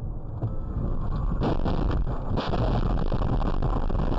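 Road and wind noise inside a car, picked up by its dashcam microphone at expressway speed, as a steady low rumble. Two brief harsher surges come about one and a half and two and a half seconds in, as the car swerves hard to the right.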